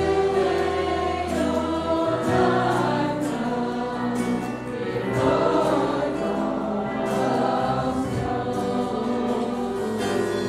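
A church congregation singing a hymn together, accompanied by violins and other instruments.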